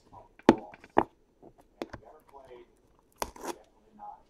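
An aluminium briefcase being handled and set down on a table: a few sharp knocks and clicks, the first two about half a second apart, then a cluster near the end.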